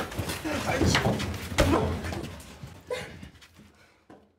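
A person's wordless, breathy vocal sounds, short and broken, with a single thump about a second and a half in; the sounds die away over the last second or two.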